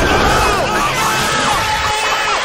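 A crowd yelling and cheering, many voices shouting over one another in short rising-and-falling calls.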